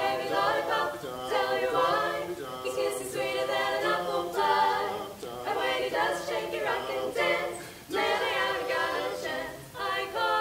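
A cappella vocal quartet of one man and three women singing a song together without instruments, in phrases with short breaths between them.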